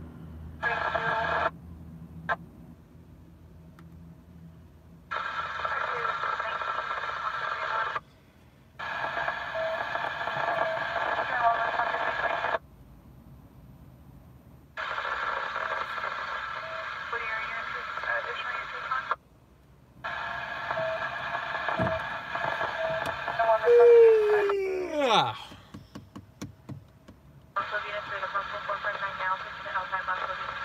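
Police and fire scanner radio: about six bursts of radio chatter, each cutting in and out abruptly. About five seconds from the end comes a sudden falling tone, the loudest moment.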